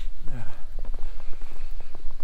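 Footsteps crunching in fresh snow, a quick irregular run of short crunches over a steady low rumble.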